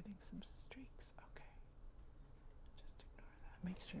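A quiet, soft-spoken voice making a couple of brief whispered sounds, with faint small clicks and taps from handling a nail polish brush and a paper template.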